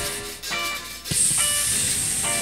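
Rock band playing live: held electric guitar notes in a brief lull, then the full band and cymbal wash come back in about a second in.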